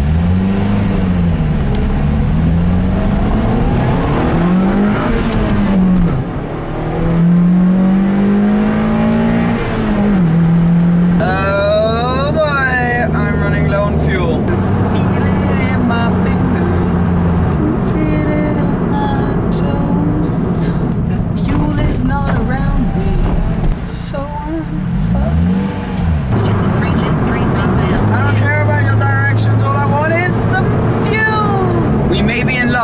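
Lotus Elise Club Racer's four-cylinder engine heard from inside the cabin, accelerating hard through the gears: the revs rise and drop back with each shift, then settle to a steady cruise. Near the end the revs climb and fall once more.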